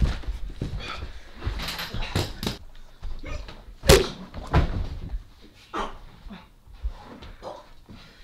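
Staged fistfight scuffle: irregular sudden thumps and bumps of blows and bodies, with short grunts, the loudest thump about four seconds in.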